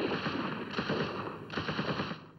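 Bursts of rapid automatic gunfire, many shots a second, with short breaks between the bursts.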